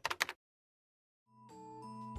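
A last few keyboard typing clicks that stop about a third of a second in, a second of silence, then soft music with held notes fading in from about one and a half seconds.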